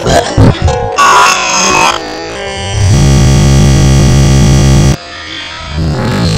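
Harsh, noisy electronic synthesizer music in abrupt chopped fragments, then a loud, buzzing low synth section from about three seconds in that cuts off suddenly about two seconds later.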